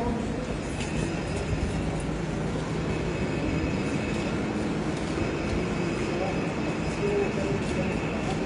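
Steady low background noise with faint, indistinct voices.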